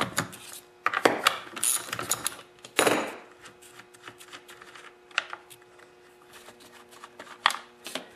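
Ratchet wrench and socket loosening the chainsaw's two bar-cover nuts: bursts of ratchet clicks and metal scraping in the first three seconds. These are followed by sparser small metallic clicks as the nuts are turned off by hand and set down.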